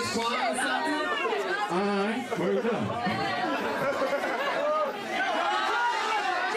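Chatter of several voices talking over one another at once, not one clear speaker.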